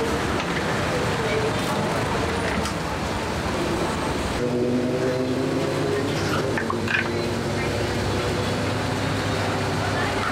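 Roadside street ambience: steady traffic noise with people talking in the background.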